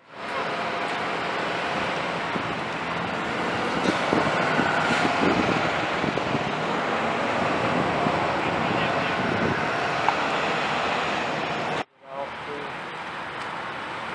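Road traffic on a street: vehicles driving past in a steady wash of engine and tyre noise, a little louder about four to six seconds in. The sound cuts out briefly near the end.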